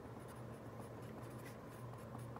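A pen writing on lined notebook paper: faint, short scratching strokes as a few words are written by hand.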